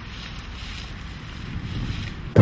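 Steady rushing wind noise, growing slightly louder toward the end.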